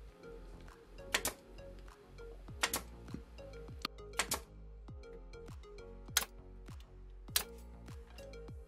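18-gauge brad nailer firing nails into plywood: about nine sharp clacks at irregular intervals, some in quick pairs. Background music with a steady beat runs underneath.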